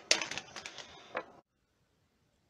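Quick clicks and taps of a phone being handled close to its microphone, with one louder knock at the start; the sound cuts off abruptly to silence about one and a half seconds in.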